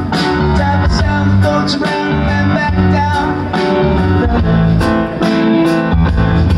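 Live rock band playing loudly, with drum kit, bass guitar and guitar.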